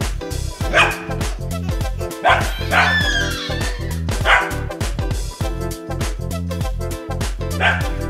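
A curly-coated dog barking playfully in short single barks, five in all, over background music with a steady beat.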